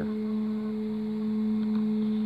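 A steady hum: one held low tone with a fainter tone about an octave above it, unchanging in pitch and level.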